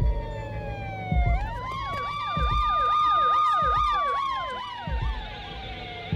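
An emergency-vehicle siren. A long wail falls slowly in pitch, and after about a second a fast up-and-down yelping siren joins it over a held tone. The yelp dies away after about four seconds, leaving the falling wail. Low thuds come now and then.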